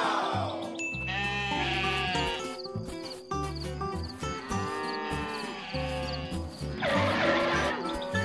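Sheep bleating several times over background music.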